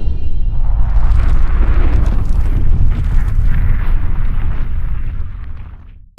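Cinematic logo-intro sound effect: a loud, deep rumble with a noisy wash above it, dying away over the last second.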